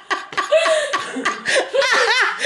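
People laughing hard in repeated bursts, rising to high-pitched squealing laughs near the end.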